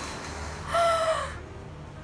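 A rooster crowing once, a single short call of under a second near the middle, over steady low background noise.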